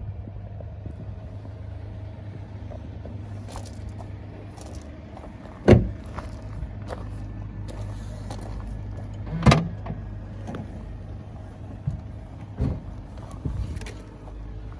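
Two solid thumps about four seconds apart from a BMW 3 Series saloon's body: a rear door shutting about six seconds in, then the boot lid being opened. A few lighter clicks follow near the end, over a steady low hum.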